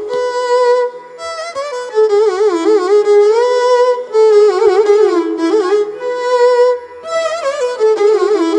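Two violins playing the same melody in Carnatic style: the opening of a varnam in raga Bilahari. Notes slide and waver in ornamented phrases (gamakas), with brief breaks about every three seconds.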